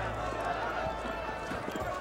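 Horses' hooves clopping on grass among the indistinct voices of a large crowd of men, with the knocks of the hooves growing more frequent in the second half.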